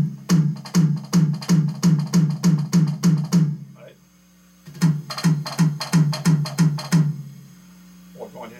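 Electronic drum kit pad played through its amplifier: a steady run of drags, two quick ghost notes into each accent, about three a second, on a low, pitched drum sound. The pattern breaks off for about a second midway, then resumes and stops about a second before the end.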